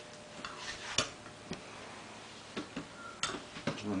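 A few irregular light clicks and metal taps as handmade metal pop-gun sculptures are picked up and handled, the sharpest about a second in and another just after three seconds.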